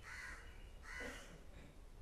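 A crow cawing twice: two short, harsh caws about a second apart, heard faintly.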